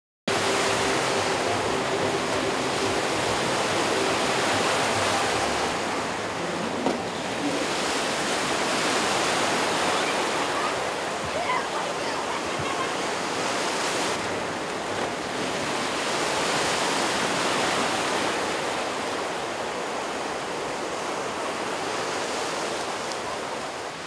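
Artificial surf waves in a wave pool, a steady rush of churning white water that swells and eases slowly.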